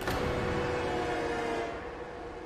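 Dramatic background-score sting: a sudden crash at the start, then a held, horn-like chord that slowly fades.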